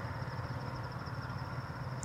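Steady outdoor background: a continuous high-pitched insect trill, typical of a cricket, over a low steady hum.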